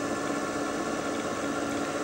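Tecom azimuth/elevation antenna pedestal's drive motor and gearing running steadily as the pedestal slews round under manual slew control, a steady hum with one held tone.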